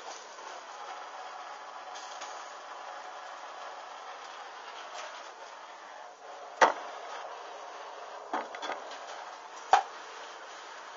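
Synthetic underwear fabric burning with small flames and dripping: a low steady hiss, with a few sharp crackles, one loud one about six and a half seconds in, a pair around eight and a half seconds and another just before the end.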